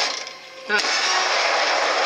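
Television soundtrack of a car scene: a sudden thump less than a second in, then a steady rush of vehicle noise, with a short laugh over it.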